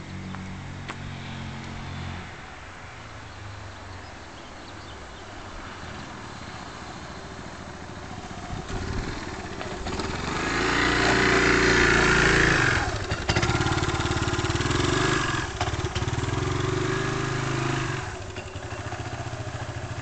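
Yamaha Majesty 400 scooter's single-cylinder engine running as it approaches and rides up close, loudest about ten seconds in, then easing down near the end.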